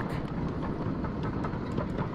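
Ride-on miniature railway freight cars rolling along the track while being shoved: a steady rumble of wheels on rail.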